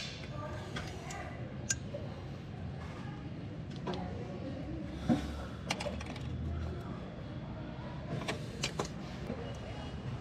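Pliers working a steel drum-brake shoe hold-down pin and retainer: a handful of sharp metallic clicks and small scrapes spread out, over a steady low hum.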